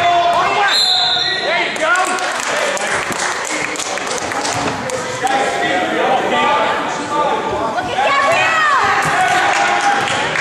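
A basketball being dribbled and bouncing on a hardwood gym floor during a youth game, amid players and spectators calling out, all echoing in the large gym.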